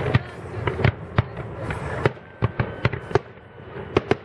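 Aerial firework shells bursting in an irregular series of about a dozen sharp bangs, some close together.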